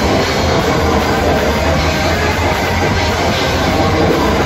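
Live heavy metal band playing at full volume: heavily distorted electric guitars, bass and a drum kit in a dense, unbroken wall of sound.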